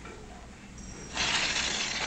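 A blasting fuse for a powder charge, lit from a candle, catches about a second in and hisses and sputters steadily as it burns.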